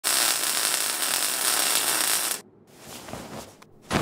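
Welding sound effect: a loud, steady hiss of a welding gun working on a steel vault door, which cuts off abruptly about two and a half seconds in, leaving only faint sounds.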